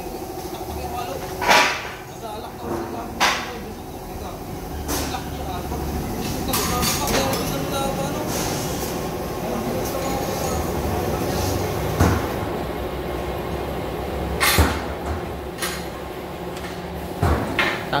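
Metal workshop noise: scattered sharp clanks and knocks of steel parts being handled, over a steady machine hum.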